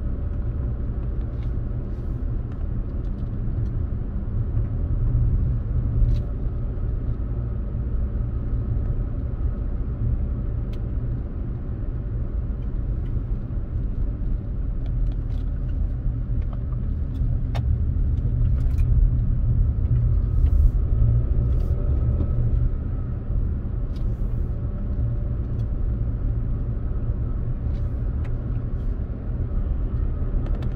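Steady low road and engine rumble inside a Toyota RAV4's cabin while driving, with a few faint ticks scattered through it.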